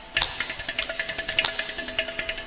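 Carnatic classical ensemble music in which the percussion section (mridangam, ghatam, morsing) plays a fast, even run of strokes, about nine a second, over a steady held drone. The strokes drop away briefly at the very start and come back in strongly a fraction of a second in.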